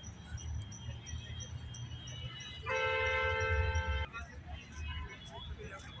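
A vehicle horn sounds one steady, loud two-tone blast of about a second and a half, a little under halfway through, and cuts off sharply. Under it are a low rumble and scattered crowd voices, and in the first half a faint, rapid high ticking of about five a second.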